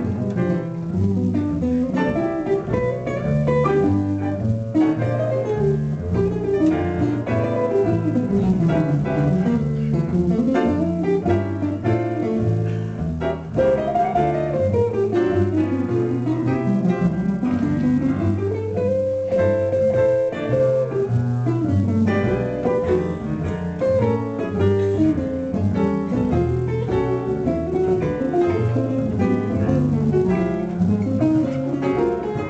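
Live jazz trio of guitar, plucked double bass and piano. The guitar carries the melody in long running lines that sweep up and down, over stepping bass notes.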